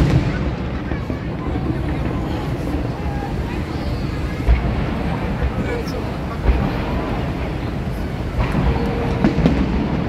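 A large aerial fireworks display going off in a continuous rumble of booms and crackle, with sharper bangs standing out about four and a half and six and a half seconds in and again near the end.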